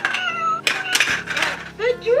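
VTech Sort & Discover Drum's speaker playing its electronic voice and then a recorded cat meow near the end, set off by a shape piece dropped into a sorter hole. A few light plastic clicks sound in the middle.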